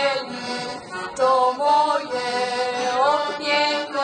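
Folk music played on the heligonka, the Slovak diatonic button accordion: sustained, reedy chords, with a short upward slide in pitch about three seconds in.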